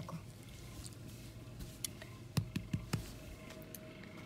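Faint rustling of a hand rubbing a dog's long fur, with a few soft knocks and clicks between two and three seconds in.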